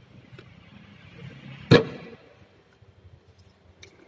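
A single sharp metallic slap about two seconds in, as the Ford Everest's fuel filler flap is pushed shut, with a faint click near the end.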